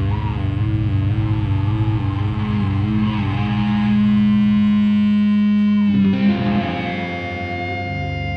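Live heavy rock band, with distorted electric guitars and bass. Wavering, bent guitar notes give way to one long held note about three seconds in, and after about six seconds steady notes ring on.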